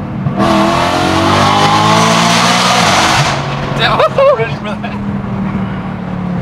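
BMW E92 M3's S65 V8 through a cat-deleted, straight-piped titanium exhaust, heard from inside the cabin under a hard pull: the engine note climbs in pitch for about three seconds, then drops off suddenly and runs on at lower revs.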